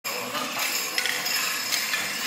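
Metal jingles on an Apache Mountain Spirit dancer's costume clinking lightly as he steps, a handful of separate small clinks.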